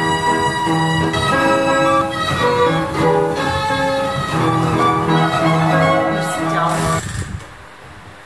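Hupfeld Phonoliszt-Violina, a roll-played automaton with self-bowed violins and piano, playing a melody with violin tones over piano accompaniment. The music cuts off about seven seconds in.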